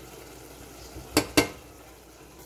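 Two sharp knocks, about a fifth of a second apart, a little over a second in: a spatula striking a metal saucepan while stirring. Underneath, the shrimp sauce simmers faintly in the pan.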